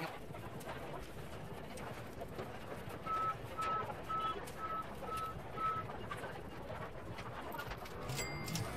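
Steady background hubbub of a busy fast-food restaurant, with a run of six short electronic beeps at one pitch, about two a second, midway through.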